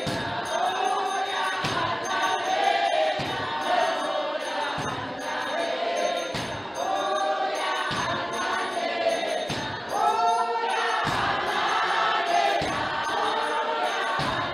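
A congregation singing together in many voices, with a heavy beat about every one and a half seconds and a light jingling over it.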